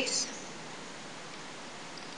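Steady, even hiss of the recording's background noise, with the end of a spoken word at the very start.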